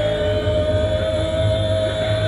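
A live rock band's sustained drone: one held note over a low rumble, with no beat.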